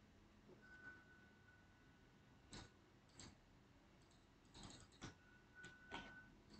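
Near silence broken by a few faint, irregular clicks of a computer mouse.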